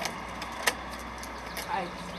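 A bunch of keys jangling and clicking as a key is turned in the lock of an aluminium-framed glass door to unlock it, with a few sharp metallic clicks, the loudest about two-thirds of a second in.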